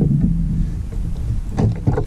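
Wind buffeting the camera microphone on a kayak, a dense, uneven low rumble, with a few short knocks about one and a half seconds in.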